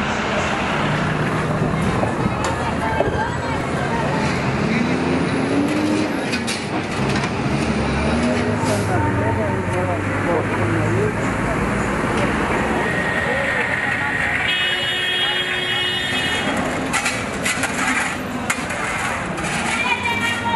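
Busy city street ambience: traffic running with voices in the background. A brief horn-like toot sounds about fourteen and a half seconds in. A run of sharp knocks and scrapes follows near the end.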